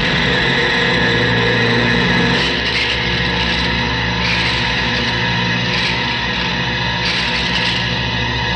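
Dramatic action-film background score: sustained notes over a steady low pulse, with bright crashes recurring every second or two.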